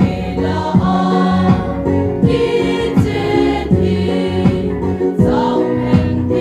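A women's choir singing a gospel song together, over instrumental accompaniment with a steady drum beat of about one stroke every three quarters of a second.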